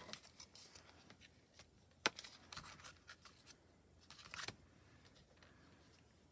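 Faint handling of clear photopolymer stamps and paper on a stamping platform: a sharp tick about two seconds in, then soft rustling and small clicks as a clear pineapple stamp is taken from its sheet and set down on cardstock.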